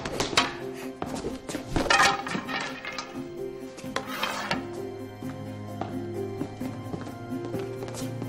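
Background music with a wooden practice sword clacking and swishing in a quick sparring exchange: several sharp knocks in the first half, busiest around two and four seconds in.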